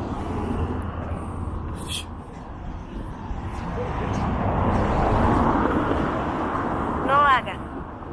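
A car passing along the street, its engine and tyre noise swelling about halfway through and then fading, over steady traffic background. A brief voice is heard near the end.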